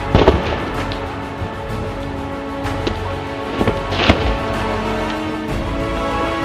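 Background music, over which a mushroom-mycelium and wood-chip surfboard blank cracks and crunches as it is stomped and broken apart: one burst of cracks right at the start and another cluster about four seconds in.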